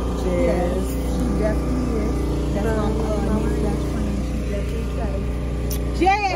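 Steady low road and engine rumble inside a moving car's cabin, with faint talking over it.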